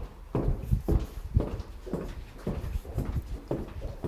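Footsteps on a hard corridor floor, a person walking at a steady pace of about two steps a second.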